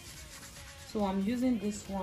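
Plastic foot file rubbing against the wet, soapy sole of a foot, faint. About a second in, a louder voice comes in over it.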